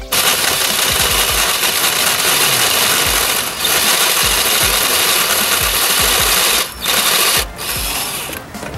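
Power drill cutting the turbo oil return hole in the 2.4L Ecotec engine's oil pan, running steadily with a brief dip about three and a half seconds in and stopping twice briefly near the end.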